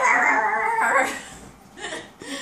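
Four-month-old Border Collie puppy vocalising excitedly in rough play, a loud burst of about a second, then a shorter sound near the end.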